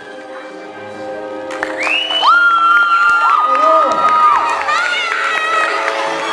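An audience cheering, with children shrieking, over background music; the cheering swells about two seconds in, as long high shrieks that rise, hold and fall.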